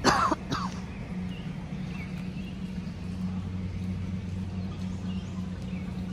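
Two short coughs right at the start, followed by a steady low hum with a few faint high chirps.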